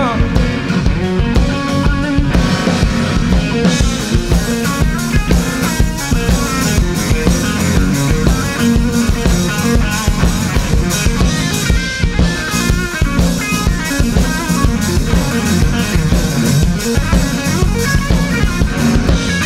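Live blues-rock trio playing an instrumental section: electric guitar over electric bass and a drum kit, with no singing.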